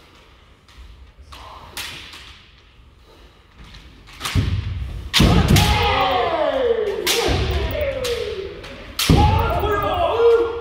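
Kendo practice on a wooden dojo floor: several loud stamping footfalls and bamboo shinai strikes from about four seconds in, between long drawn-out kiai shouts, echoing in a large hall.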